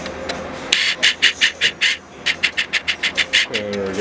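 Rapid, evenly spaced rasping strokes, about five or six a second, in two runs with a short break near the middle, like a file or sanding being worked back and forth.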